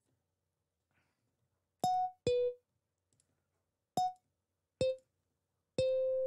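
Single notes from a soundfont's Picked Bass patch in LMMS's SF2 Player, each sounding once as it is clicked into the piano roll. There are five short plucked notes that alternate between two pitches, the last held a little longer, all pitched high for a bass.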